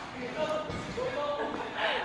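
A badminton racket lightly striking a shuttlecock from across the court, heard faintly in a large hall with faint voices in the background.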